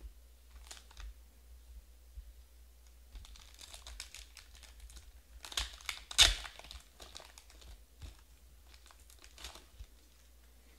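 Foil trading-card pack crinkling as it is handled, with a loud sharp rip about six seconds in as it is torn open, then lighter rustling as the cards are slid out.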